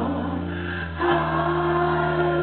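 Live rock band playing a sustained passage through the PA, electric bass and guitar holding chords, moving to a new chord about a second in as the sound swells.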